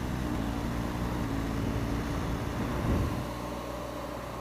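BMW R1200GS Adventure's boxer-twin engine running steadily under way, with wind and road noise. The engine note softens slightly about three seconds in.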